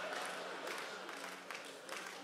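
A soft held keyboard note sustained under light audience noise in a large hall.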